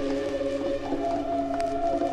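Music playing from a vinyl record on a turntable: sustained, held instrumental tones with one note sliding upward about a second in, and no singing.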